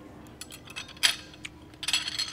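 Spoon and chopsticks clinking against a ceramic soup bowl: a few light taps, a sharp clink about a second in, and a ringing clatter near the end as the spoon is picked up out of the bowl.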